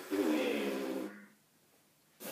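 Lips buzzing without the mouthpiece, as a brass player's 'M' warm-up: air pushed through closed lips makes a wavering low buzz with heavy breath noise, trailing off after about a second. The buzz is forced and tense, with too much air behind it.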